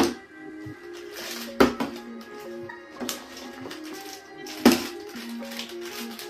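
A partly water-filled plastic bottle being flipped and landing on a tabletop: three sharp knocks, the loudest near the end, over background music with held notes.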